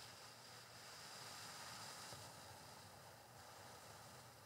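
A faint, slow exhale, a soft breathy hiss that gradually tapers off: the long out-breath of a physiological sigh.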